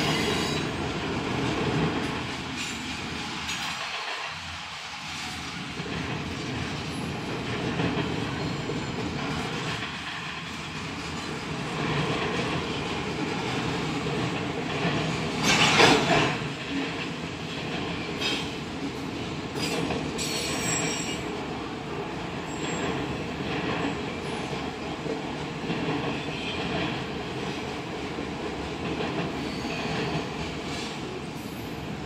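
Freight stack train's cars rolling past steadily, steel wheels on rail with clickety-clack over the joints. About halfway through, a brief loud screech of wheel on rail is the loudest moment.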